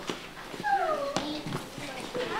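A short, high whimper that falls in pitch over about half a second, followed by a sharp click.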